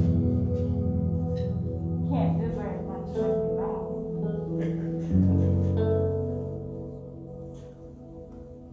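Church keyboard holding sustained organ chords over a deep bass note, changing chord about five seconds in and fading toward the end. A voice sings or calls out briefly about two seconds in.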